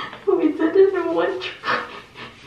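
A person's wordless, wavering, whimper-like emotional cry lasting about a second, high in pitch, followed by a quick sharp breath.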